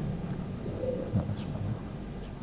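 Quiet room tone of a mosque hall: a low, steady rumble with a soft thump about a second in and a few faint clicks.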